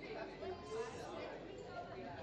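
Faint chatter of many people talking at once, with no single voice standing out.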